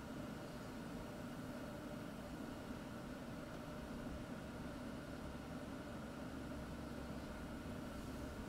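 Steady, even background hiss with a faint low hum, unchanging throughout and with no distinct events.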